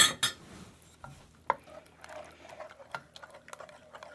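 Wooden spoon stirring beaten eggs into a thick corn and milk sauce in a stainless steel saucepan, with soft scattered knocks of the spoon against the pan.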